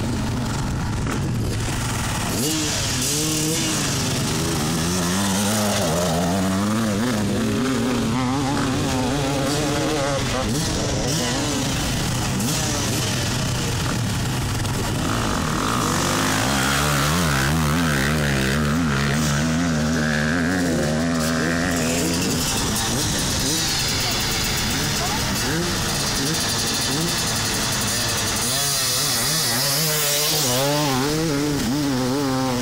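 Enduro dirt-bike engines revving up and down. Around the middle, a bike at the start line runs on a steadier note and then accelerates away.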